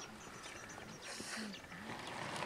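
Faint open-air background: short low calls in the distance, small high chirps and a brief hiss about a second in.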